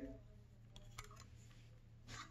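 Near silence with a faint low hum, broken by two faint clicks about a second in from the key turning in the cylinder of a commercial Yale lever lock.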